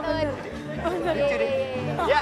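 Voices chattering and calling out over background music with a steady beat.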